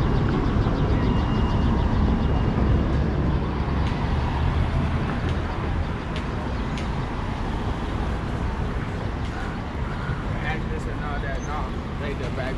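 Busy city street ambience: passing car traffic over a steady low rumble, a little louder in the first half, with faint voices of passersby.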